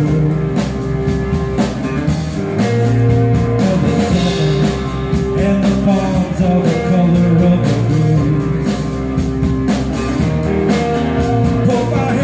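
Live rock band playing: two electric guitars and a drum kit, with a man singing into the microphone around the middle.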